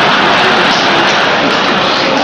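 A large audience laughing and applauding together in a loud, steady roar.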